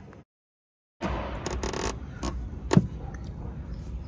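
Thin line being sawed behind a chrome Nissan emblem to cut through its adhesive, with a scraping rasp and several sharp clicks, the loudest near the middle. This follows about a second of dead silence at an edit.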